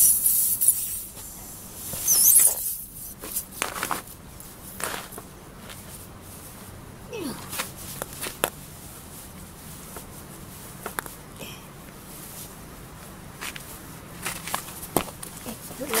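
A brief hiss of air from the punctured tyre around the newly inserted plug fades in the first half-second. Then come scattered clicks and knocks of a hydraulic floor jack being worked to lower the car.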